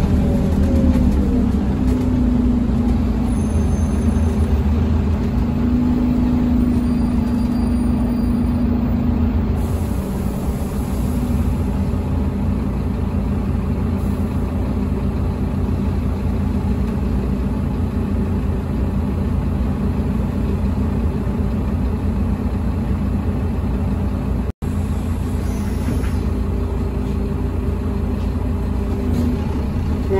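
Scania OmniCity double-decker bus heard from inside the upper deck: a steady diesel engine hum with road noise as the bus drives along. The engine note drops about ten seconds in, and the sound cuts out for a split second near the end.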